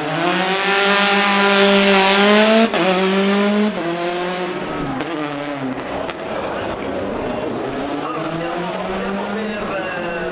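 Peugeot 208 T16 rally car's turbocharged four-cylinder engine revving hard under acceleration, rising in pitch with abrupt gear changes about three and four seconds in. It then grows fainter as the car pulls away, still rising through the gears.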